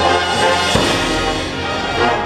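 Marching band playing held brass chords. A single low hit a little under a second in starts a deeper low rumble underneath the chords.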